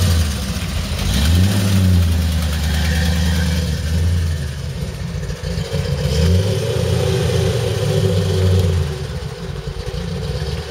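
Loud engine of a manual-transmission Ford Mustang pulling away at low speed, revving up twice: the engine note rises about a second in, holds for a few seconds and falls away, then rises and falls again in the second half.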